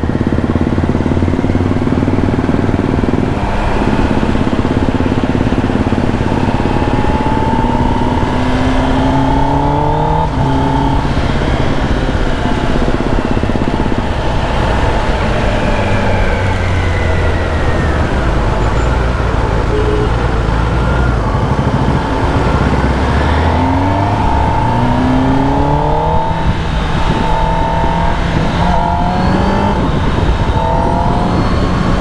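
Kawasaki ZX-10R's inline four-cylinder engine on its stock exhaust, heard from the rider's seat while accelerating through the gears. Its pitch rises, then drops at each of several upshifts.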